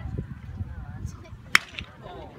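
A single sharp crack of a pitched baseball striking, bat or catcher's mitt, about one and a half seconds in, with a brief ring after it.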